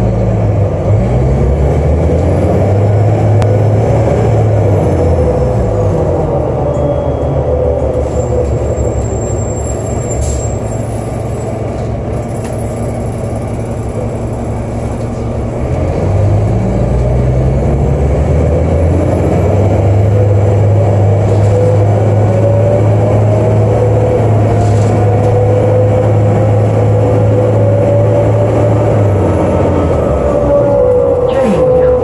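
Cabin sound of a New Flyer D40LF city bus: its Cummins ISL diesel engine pulling through an Allison B400 automatic transmission that never locks up its torque converter. The engine note rises and holds, drops away around five seconds in, then climbs again about sixteen seconds in and holds steady, with a whine that rises slowly with road speed.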